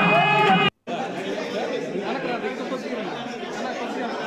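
A single voice talking is cut off abruptly less than a second in, followed by the chatter of a crowd, many people talking at once in a large room.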